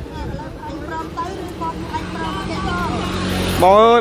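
A motor vehicle passing on the road with a steady engine hum that grows louder toward the end, under faint background voices. A man starts talking near the end.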